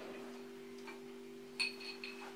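A drinking glass clinks lightly with a short high ring about one and a half seconds in, after a fainter click, as the glass of cola is drunk from. A faint steady low hum runs underneath.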